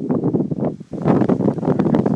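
Wind buffeting the phone's microphone: a loud, gusty rumble with a brief lull a little before the middle.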